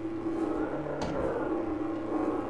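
A steady electrical hum over faint room noise, with a brief faint click about a second in.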